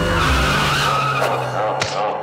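Closing music sting with a loud whooshing sound effect over a held low note.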